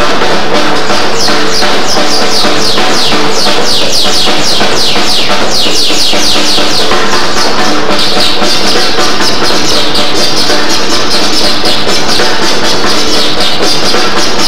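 Drum kit played loud and continuously: a fast, even run of strokes at about five a second, with bright cymbal-range ring over steady held tones.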